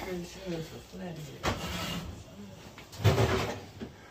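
Quiet background speech from someone away from the microphone, with two brief noises about one and a half and three seconds in.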